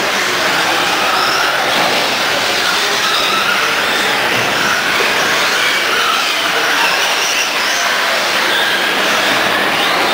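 Several electric RC trucks racing on a dirt-style track, their motors whining and the pitch of each whine rising and falling as they accelerate and slow, over a steady hiss.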